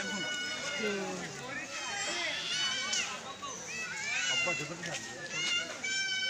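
Several people's voices outdoors, overlapping chatter with high, drawn-out calls from children playing.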